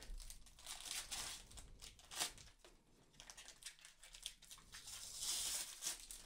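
Thin clear plastic bag crinkling and rustling in irregular bursts as a clear silicone phone case is handled and pulled out of it, loudest a little after five seconds in.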